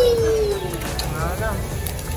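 A young child's high voice holds one long note that slides down in pitch, then gives a short rising-and-falling squeal about a second and a half in, over steady low background noise.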